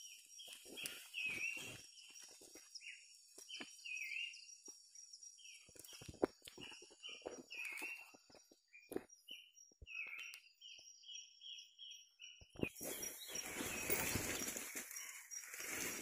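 A bird calling with short chirps that dip in pitch, about two a second, with scattered clicks and snaps from brush. About 12.5 seconds in, a steady rustling of leaves and brush takes over as someone pushes through the undergrowth.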